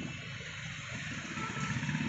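Street traffic with a vehicle engine running nearby, a steady low rumble that grows a little louder near the end.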